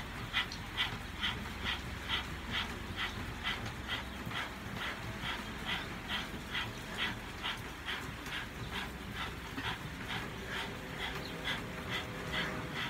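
Rapid rhythmic panting through open mouths with the tongue stuck out, about two and a half quick breaths a second, from people doing a Kundalini breathing exercise.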